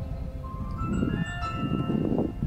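Instrumental music: a slow melody of held, bell-like notes stepping up and down, over a steady low rumble.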